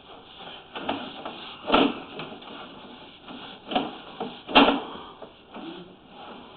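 Irregular scrapes and knocks of a sewer inspection camera's push cable being worked forward into a root-choked sewer line, with two louder knocks, about two seconds and four and a half seconds in.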